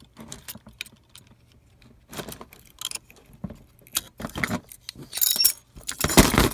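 Small metal parts of an opened hard drive clinking and rattling as it is handled: a scattered string of light clicks and clinks, busier and louder in the second half, with a brief metallic ring near the end.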